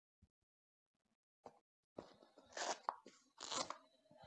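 Rustling and crunching of clothing and foam sparring pads being handled and pulled into place on a stuffed dummy. The sounds grow louder about halfway through, with two louder bursts near the end.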